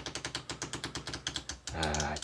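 A new deck of game cards being riffled at the edge with the thumb: a rapid run of crisp card clicks, about a dozen a second, that stops near the end.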